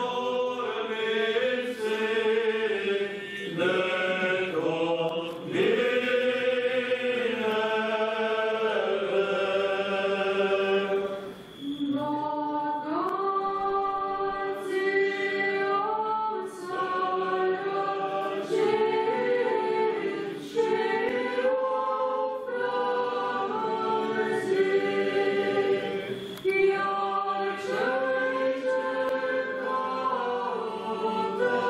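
A choir singing an Eastern Orthodox liturgical chant a cappella in several-part harmony, in long held phrases with brief breaks between them, the longest about eleven seconds in.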